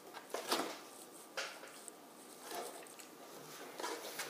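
Cardboard flaps of a cereal box rustling and scraping as a hand pushes them, in about five short noisy bursts, the loudest about half a second in.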